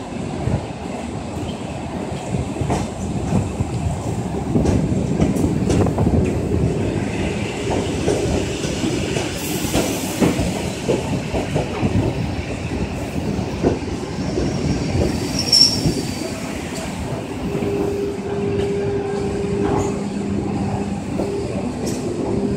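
ED4MK electric multiple unit running past at close range: a dense rumble with repeated wheel knocks over the rail joints. A short high-pitched squeal comes about two-thirds of the way through, and a steady low hum sets in over the last few seconds.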